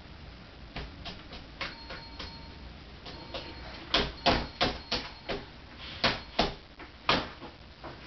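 Computer keyboard keys being struck: irregular clicks and taps, faint and sparse at first, then louder and more frequent from about four seconds in.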